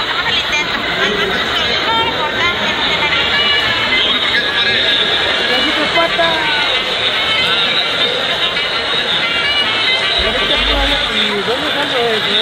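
Steady babble of a crowd of many people talking at once, with music playing underneath.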